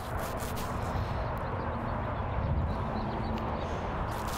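Steady outdoor background noise with a low rumble, like wind on the microphone; no distinct events stand out.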